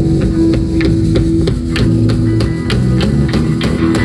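Live rock band playing an instrumental passage without vocals: drum kit keeping a steady beat under sustained guitar and low bass notes.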